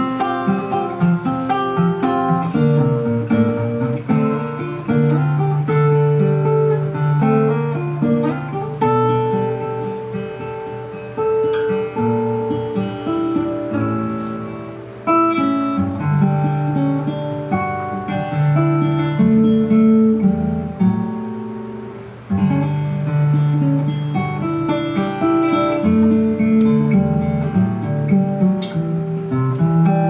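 Solo small-bodied acoustic guitar playing an instrumental: a picked melody over ringing bass notes. The playing eases off briefly twice, about halfway and two-thirds through, and then picks up again.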